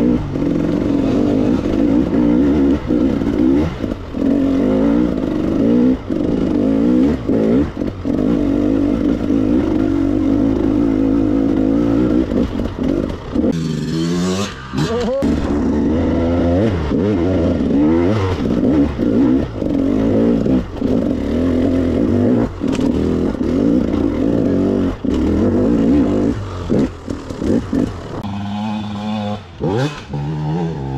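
KTM 300 EXC two-stroke enduro engine ridden off-road, the pitch rising and falling with short throttle bursts and brief chops. About halfway through it revs up sharply and drops back, and near the end it settles to a lower, steadier note.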